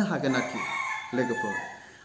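A rooster crowing in the background: one long call lasting well over a second, under a man's brief speech.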